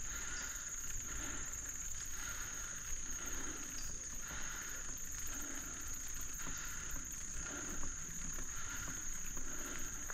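A steady high-pitched drone of insects from the woods, over the low rumble of a bicycle rolling along a dirt trail, with a soft swell recurring about once a second.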